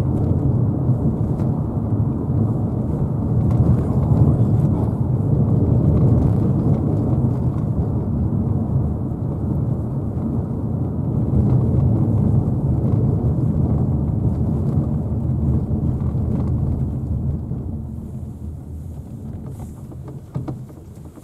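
Steady low rumble of tyre and road noise heard inside the cabin of a Mazda Biante minivan as it drives over a rough road surface. The rumble fades over the last few seconds.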